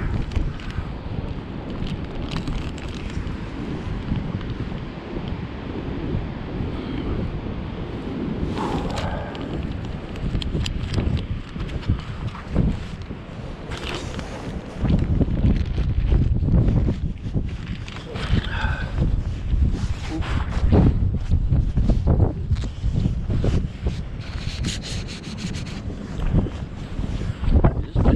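Wind buffeting the microphone, a heavy low rumble that gusts stronger from about halfway through, with scattered clicks and knocks of gear being handled.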